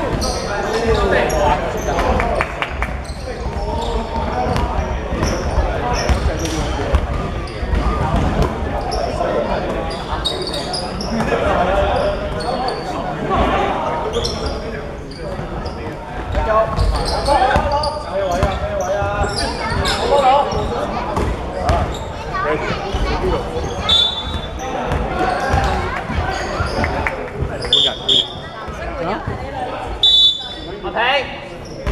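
Basketball game on a hardwood court: the ball bounces, sneakers give a few short high squeaks, and players call out, all echoing in a large gym hall.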